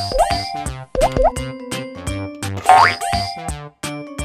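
Cheerful children's background music with a steady beat, with springy cartoon boing effects layered over it: quick rising glides just after the start, about a second in, and the loudest near the three-second mark.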